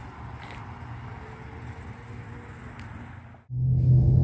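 Steady outdoor background noise, then after a brief dropout near the end, a louder, low, steady drone of a car heard from inside its cabin.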